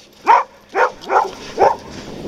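A dog barking four times, about half a second apart.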